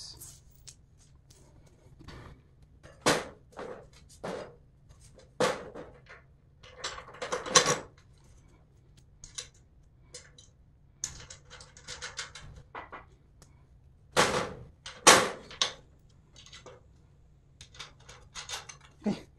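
Steel bolts and nuts clinking and knocking against the steel frame of a folding hitch cargo rack as they are fitted through its joint bracket by hand. A series of separate sharp clinks and knocks with short rattling clusters, the loudest about three seconds in and again near the end.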